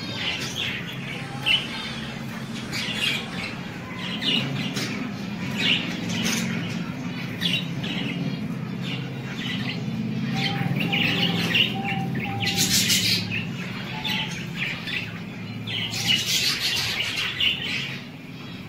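Caged budgerigars chirping and chattering in many short, quick calls, over a steady low hum. Two short bursts of noise stand out, one about two-thirds of the way through and one near the end.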